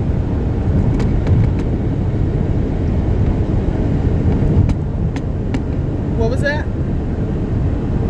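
Steady low rumble of a car heard from inside the cabin, with a few light clicks and a short voice about six seconds in.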